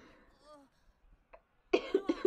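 A woman's laughter trails off into a quiet pause, then near the end she gives a sudden short cough that runs straight into speech; she has a lingering cough.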